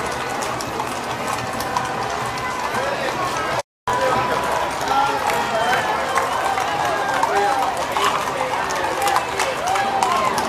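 A crowd chattering, with horses' hooves clip-clopping on the paved street as riders pass. The sound cuts out completely for a moment about four seconds in.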